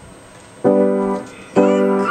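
Chords played on a piano keyboard: two sustained chords struck about a second apart, the first coming in just over half a second in.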